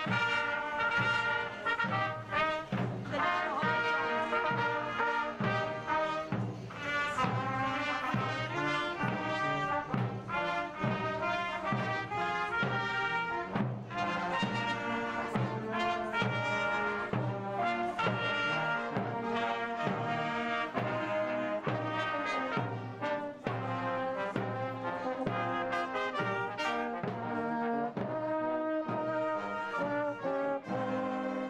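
Marching brass band music: trumpets, tuba and saxophone playing a tune over drums with a steady beat.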